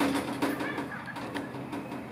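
Violet turaco giving low, guttural clucking calls that start suddenly, mixed with a few sharp clicks through the first second and a half.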